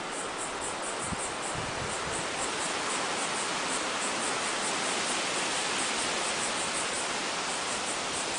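Steady outdoor hiss of wind over the shore and through the trees, with insects chirping faintly high up at about three or four chirps a second.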